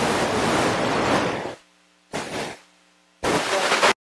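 Three bursts of loud, even hiss coming over a webinar audio line, each cutting off abruptly to dead silence, the longest first.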